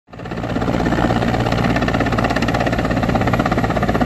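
Large military transport helicopter flying low on its approach to land, with the loud, steady, rapid beat of its rotor blades over the engine noise.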